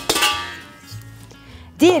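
Stainless steel stand-mixer bowls clinking together as the smaller bowl is lifted out of the larger one. There is one sharp metallic knock that rings and fades over about a second.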